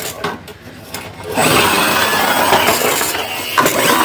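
Red plastic push-back toy car's spring motor whirring and its wheels running fast across a terrazzo floor for about two seconds, starting a second and a half in. A sharp knock comes near the end.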